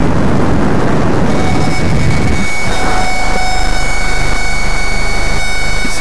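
Power tilt-and-slide sunroof of a 2008 Ford Focus run by its electric motor: a low rumble for the first two seconds or so, then a steady motor whine that stops just before the end.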